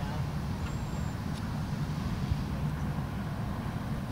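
Steady low diesel engine rumble with a constant hum, a fire engine running its pump to feed the hose stream.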